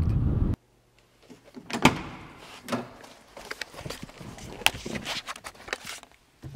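Wind buffeting the microphone, cut off abruptly half a second in. Then scattered clicks, knocks and rustling of someone moving about in a parked car with its door open, the loudest knock about two seconds in.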